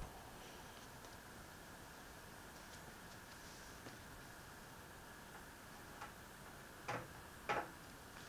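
Quiet room tone with a faint steady hum, then two short soft knocks about a second apart near the end.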